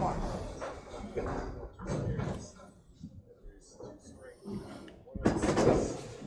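Candlepin bowling alley sounds: knocks and clatter, fitting a returning ball rolling back along the return track and knocking into the rack, over background voices. A man's voice comes in near the end.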